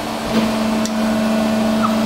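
Forging press running with a steady two-pitch hum that grows louder about a third of a second in, with a faint click or two.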